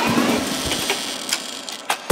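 Breakdown in an electronic dubstep track: the deep bass drops out, leaving a hissy, glitchy synth-noise texture with a few sharp clicks that fades toward the end.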